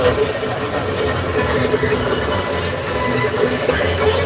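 Steady road and engine noise inside a moving car's cabin, with an indistinct voice over it.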